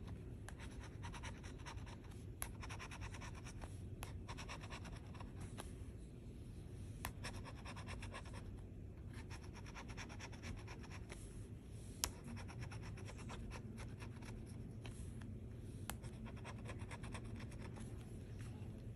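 Metal bottle opener scraping the coating off a scratch-off lottery ticket: faint, rapid scratching strokes with a few sharper clicks.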